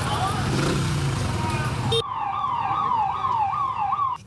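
A wailing ambulance siren cuts in sharply halfway through. It sweeps down in pitch and snaps back up, about three times a second. Before it comes a dense, noisy street commotion.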